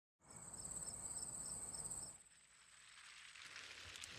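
Faint, cricket-like night chirping: a steady high trill with a lower chirp about twice a second. It cuts off about two seconds in and gives way to a faint, slowly rising hiss.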